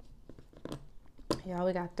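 Close-miked chewing of chicken wings: scattered wet mouth clicks and smacks, with a louder click just before talking begins near the end.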